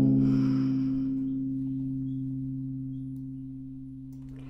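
A held guitar and bass chord ringing out and slowly fading, with no new notes played.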